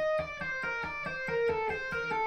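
Electric guitar played with the fretting hand alone: an even run of single notes sounded by hammer-ons in a one-three-four finger legato pattern, about five notes a second, in a clean tone.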